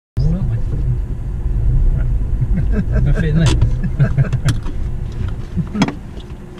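Car driving slowly, heard from inside the cabin: a loud, steady low rumble of engine and tyres, with a few sharp clicks and knocks.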